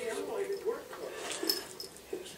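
A woman's high-pitched, wavering voice making drawn-out sounds without clear words, with a sharp click about one and a half seconds in.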